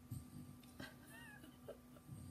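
Near silence: faint room hum, with one short, faint wavering call from a small animal a little past a second in.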